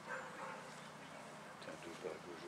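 Faint dog barking, with murmured voices behind it.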